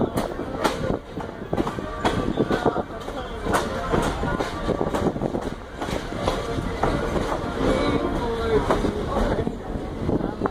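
Footsteps on a leaf-littered forest trail: irregular crunching knocks at about walking pace, with rustling handling noise from a handheld camera.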